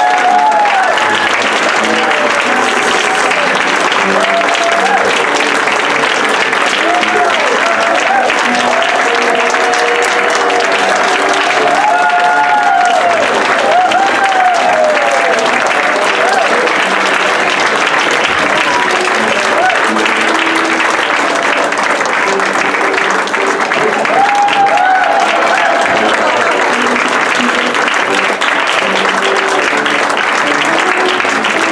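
Audience applauding throughout, with voices calling out over the clapping and music playing underneath.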